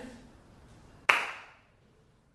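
A single sharp slate clap about a second in, with a short room echo: the sync mark that starts the take for the cameras.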